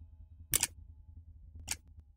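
Sound-design effect from a film soundtrack: a low rumble with light crackle, broken by two short, sharp clicking bursts about a second apart, which die away just after the second one.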